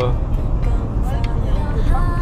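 Low, steady rumble of a car driving on a city road, heard from inside the cabin, with faint music underneath.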